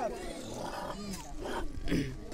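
Faint voices of people talking and calling at a distance, with no gunshot.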